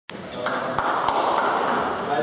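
A few sharp clicks of a celluloid table tennis ball, roughly three in a second, over indistinct voices and chatter.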